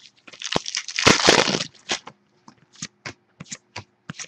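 Foil wrapper of a 2011 Prestige football card pack being torn open, a crinkling rip about a second in, followed by scattered light clicks as the cards are handled.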